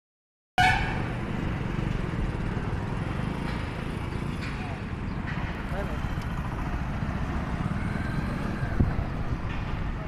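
Roadside street noise: a steady low rumble of traffic and motorcycles, with the voices of passers-by in the background and a brief tone just after the start.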